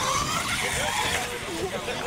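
R/C monster truck's motor whining as the truck drives over grass, its pitch rising briefly at the start, with people talking in the background.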